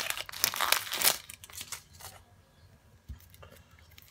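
Dry, papery onion skin crackling and tearing as it is peeled off by hand, close to the microphone. The crackling is dense for about the first two seconds, then thins to a few faint crackles.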